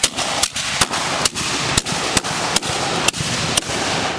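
Japanese matchlock guns (hinawajū) fired in a ragged volley: a string of loud, sharp cracks about twice a second over a continuous noise.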